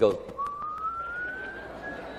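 A man whistling one long thin note that glides slowly upward, imitating someone taking off in a hurry.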